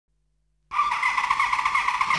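Motorcycle tyre squealing: a loud, high, wavering squeal that starts abruptly about two-thirds of a second in.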